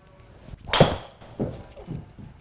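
A driver striking a golf ball off a hitting mat: one loud, sharp crack, followed by two softer thuds about half a second apart.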